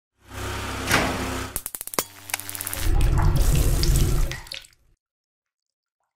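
Logo-animation sound effect: a rushing whoosh, a quick run of clicks, then a low rumbling swell that cuts off just before the five-second mark.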